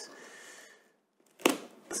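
A single sharp tap about one and a half seconds in, as hands handle a cardboard box, with a fainter click just before the end.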